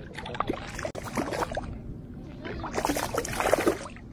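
A small hooked rainbow trout thrashing at the water's surface against the bank, splashing in short bursts, with a longer spell of splashing about three seconds in as it is lifted out on the line.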